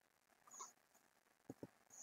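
Near silence: room tone with two faint, quick clicks close together about a second and a half in, from a computer mouse, and a soft brief hiss before and after them.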